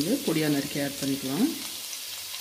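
Chopped ginger and garlic sizzling in hot oil in a wok, a steady hiss. A voice speaks in Tamil over it for about the first second and a half, then the sizzle goes on alone.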